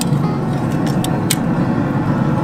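Metal tongs clinking against metal kebab skewers and the gas grill's grate, a few sharp clicks over a steady low rumble.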